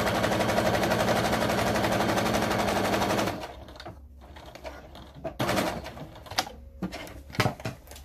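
Electric sewing machine stitching at a steady, fast speed, then stopping about three seconds in. A few light clicks and knocks follow.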